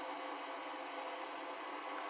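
Steady, faint background hiss with a light hum: the room tone of a small room between sentences, with no distinct event.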